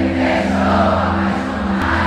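Live pagode band holding a steady sustained chord under the noise of a large, loud crowd.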